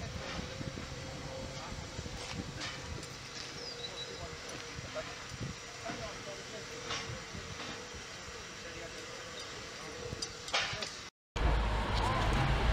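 Steam locomotive Flying Scotsman (LNER A3 Pacific) standing with steam hissing from its cylinder drain cocks, a faint steady tone running through it and people's voices in the background. Near the end the sound drops out briefly and comes back louder with a low rumble.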